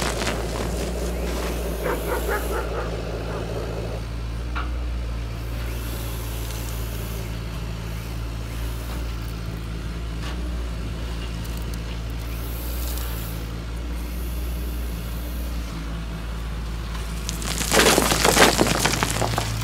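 Large RC excavator's hydraulic pump running with a steady hum, a few faint clicks in the first seconds. Near the end, stones start pouring from the bucket into a truck's dump bed.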